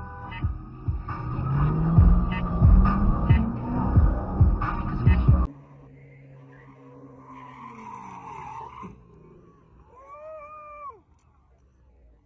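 Background music with a steady beat that cuts off about five and a half seconds in. Then a Ford Mustang's engine is heard faintly, its note sliding down, and about ten seconds in a single scream rises and falls before stopping sharply.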